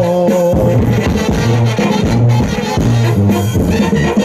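Live Mexican banda music: a bass line bouncing on a steady dance beat under held brass and clarinet melody notes.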